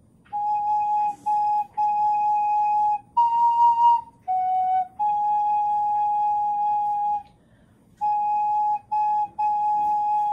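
Recorder playing a slow, simple tune: short notes mostly on one pitch, one a step higher and one a step lower, then a long held note, a brief pause, and a few more short notes.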